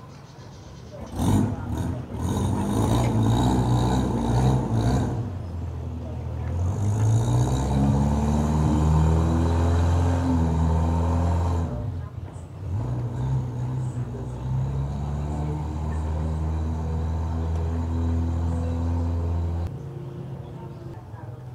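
A boat engine running with a low drone. Its pitch rises about six seconds in, it breaks off briefly around twelve seconds, then carries on steadily. A louder, rough stretch of noise with knocks fills the first few seconds.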